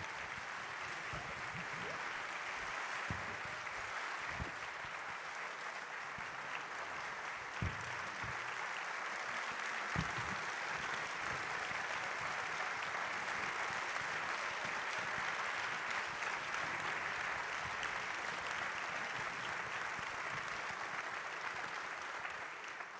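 A large theatre audience applauding steadily to welcome a guest onto the stage, with a few faint low thumps under the clapping.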